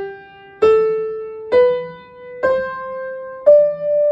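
Upright piano playing the G major five-finger scale with the right hand, slowly ascending G, A, B, C, D. The notes are struck one at a time about a second apart and each rings on until the next, with the top D held.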